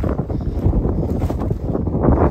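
Wind buffeting a phone's microphone: a loud, uneven low rumble that surges and drops in gusts.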